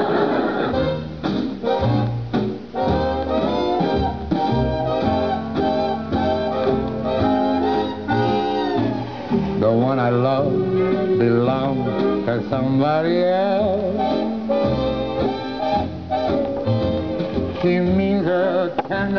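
Instrumental band introduction to a song, played back from an old radio-show recording on a vinyl LP, with the sound cut off above the middle treble. Around the middle, some of the parts waver and slide in pitch.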